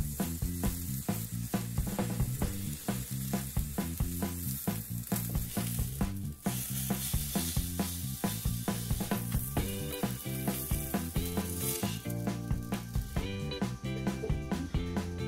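Beef steak sizzling as it sears on a hot stone griddle, a steady hiss that weakens in the last few seconds. Background music with a steady beat plays throughout.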